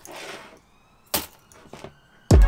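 A coil of wire being slid across a cutting mat with a short rustle, then a pair of pliers set down on the mat with a sharp clack about a second in, followed by a couple of lighter clicks.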